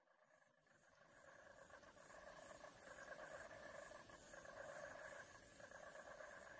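Near silence with a faint, even hiss that comes in about a second in.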